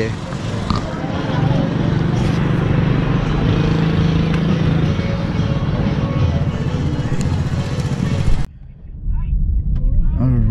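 Street traffic noise with a motor vehicle's engine running close by, a steady low hum under a dense wash of noise. The sound cuts off abruptly about eight and a half seconds in.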